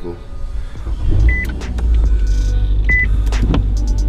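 Inside a car: a few clicks and knocks, two short high electronic beeps about a second and a half apart, and a low steady rumble that comes in about a second in, consistent with the engine starting and running.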